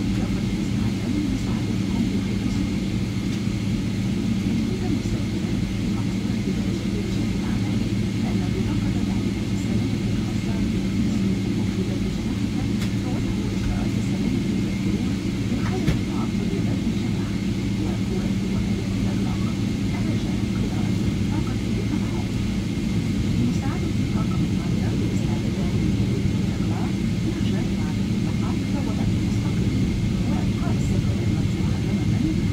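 Steady low hum inside the cabin of a Boeing 777-300ER taxiing, with a faint high steady whine above it.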